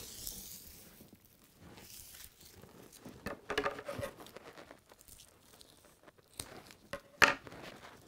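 Raffia strand rustling and crinkling as it is handled and cut with scissors, with a sharp click near the end.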